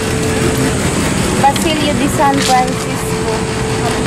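Steady outdoor background hum with a held low tone, and faint voices of people talking about a second and a half to two and a half seconds in.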